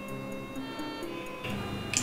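Background film music: sustained held tones with a soft, regular ticking running through them.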